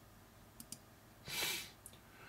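Faint clicks, two about half a second in and one just before the end, around a soft breath drawn in midway through.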